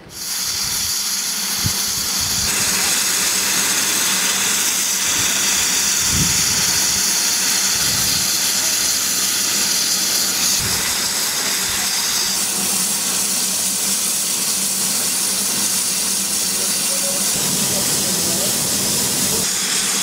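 Eritrean Railway steam locomotive 440 008, built in 1915 in Italy, standing with steam hissing loudly and steadily. The hiss shifts slightly in tone a few times.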